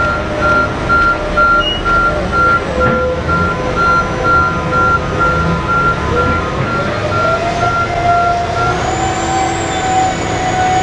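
Reversing alarm of a giant mining haul truck beeping steadily at about two beeps a second over the steady drone of its diesel engine. The beeping stops near the end as the engine note rises in pitch.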